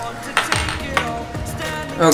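Background music playing, with a few light clicks and knocks of plastic action-camera mount parts being handled and set down on a desk.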